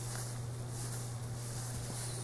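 Steady low electrical hum with a faint even hiss: room tone, with no distinct sound events.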